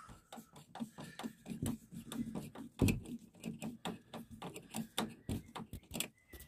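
Screwdriver and metal stay fittings of a motorhome's hinged window clicking and tapping irregularly as the stays are screwed back on.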